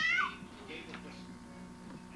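A baby's high-pitched squeal right at the start, bending down in pitch and breaking off after a moment, then quieter room sound over a low steady hum.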